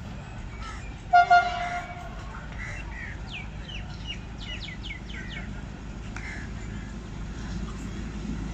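Horn of an approaching Socofer rail crane (track material lorry) sounding one short toot about a second in, over the low, steady rumble of its engine, which grows slightly near the end. Birds chirp several times in the middle.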